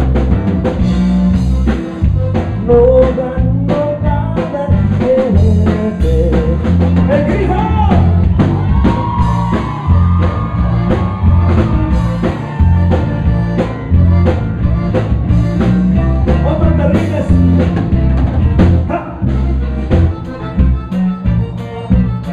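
Live Tejano band playing an instrumental passage: button accordion carrying the melody over a drum kit, congas and electric guitar, with a steady dance beat.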